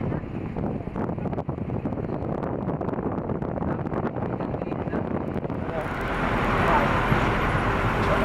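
A moving vehicle's road and engine noise heard at an open side window, with air rushing past. The wind hiss swells and grows louder about six seconds in.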